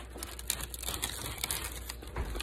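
Biting into and chewing a crispy breaded fried pork tenderloin sandwich: a run of small crunches and crackles.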